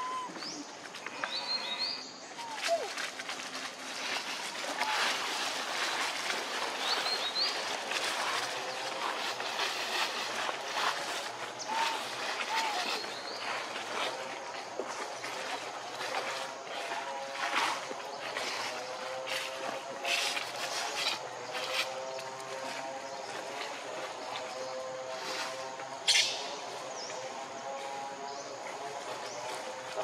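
Dry leaf litter crackling and rustling as long-tailed macaques move and pick at things in it, with short high chirps now and then. From about halfway, a steady hum of several pitches runs underneath, and one sharp crack sounds near the end.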